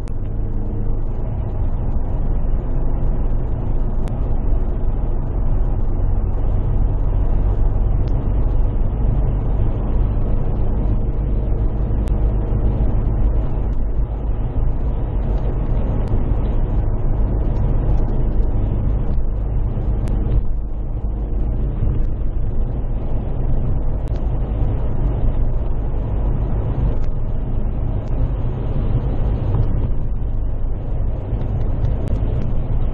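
Steady interior noise of a car cruising at motorway speed: a low road-and-tyre rumble with an even engine drone.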